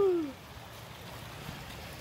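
A voice trails off at the very start, then only faint, steady outdoor background noise with no distinct events.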